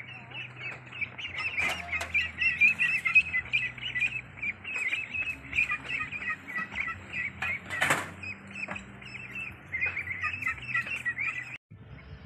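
A crowd of Pekin ducklings peeping without pause, many short high chirps overlapping, over a low steady hum. A single sharp knock about eight seconds in.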